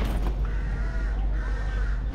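A crow cawing twice, each call drawn out for about half a second.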